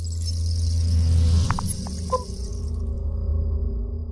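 Logo-reveal sound effect: a low rumble swells over the first second under a bright shimmering hiss, with a few short chiming pings about a second and a half to two seconds in, then settles into a steady low drone.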